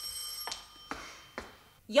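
Electric doorbell ringing steadily, cutting off about half a second in, followed by two or three faint clicks.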